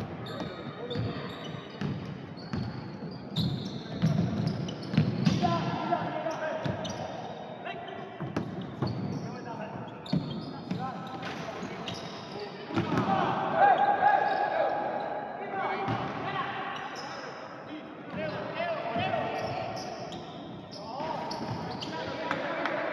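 Basketball dribbling and bouncing on a wooden gym floor, with indistinct players' voices and shouts in a large, echoing hall.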